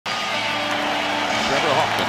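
A steady din of a large baseball stadium crowd, with a man's commentary voice coming in near the end.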